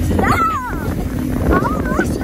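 A girl yelling at the driver to stop in high, wavering cries, over steady wind on the microphone and the running of a motorboat.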